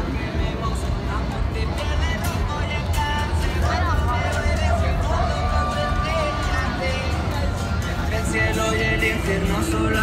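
Music with a singer holding long notes and sliding between pitches over a steady bass, amid the chatter of people nearby.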